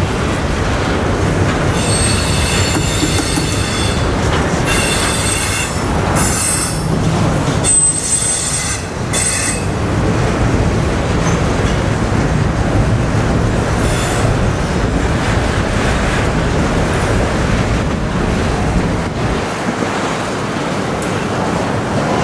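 Double-stack container cars of a freight train rolling past, a steady heavy rumble of steel wheels on rail. High-pitched metal squealing comes in several bursts over the first ten seconds, with a short one again midway.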